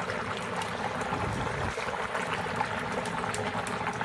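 Dry ice pellets sublimating in hot water in a stainless steel pot: a steady bubbling and fizzing as the CO2 gas escapes.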